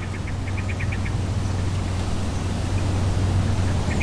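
Steady low background hum that grows slightly louder, with a short run of faint, evenly spaced high chirps about half a second to a second in.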